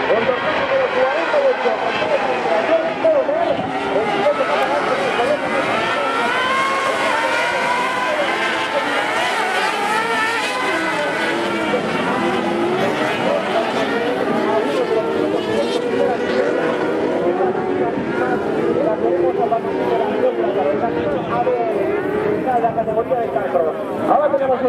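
A pack of Carcross buggies racing on dirt, their high-revving motorcycle engines overlapping and rising and falling in pitch as the drivers accelerate and change gear.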